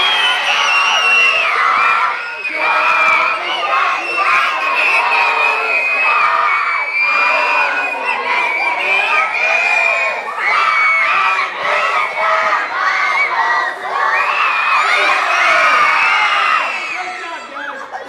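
A large group of children shout-singing a booster song at the top of their voices, many voices together with no let-up, dying away just before the end.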